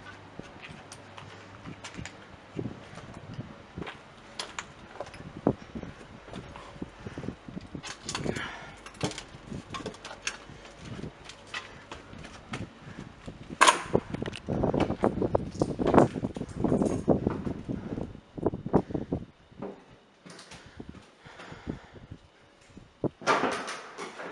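Knocks, creaks and scraping of an old wooden door being pushed and squeezed through, with footsteps and scuffs. A sharp knock comes a little past halfway, followed by several seconds of denser thumps and scuffing.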